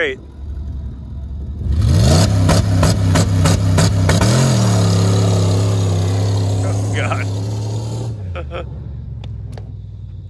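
Dodge Durango V8 engine revved hard. Its pitch climbs sharply about two seconds in and surges once more about four seconds in, as the throttle is held open through a neutral drop. It then holds at high revs while the SUV drives off with its tyres spinning in the dirt, and trails away at about eight seconds, with sharp crackles from spraying dirt early on.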